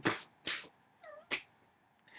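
A man's stifled laughter: a few short breathy puffs and a brief high squeak about a second in.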